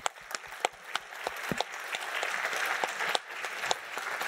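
Audience applauding at the close of a talk: scattered separate claps that build into full, steady applause by about two seconds in.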